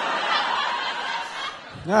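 A live audience laughing together, the laughter fading away after about a second and a half.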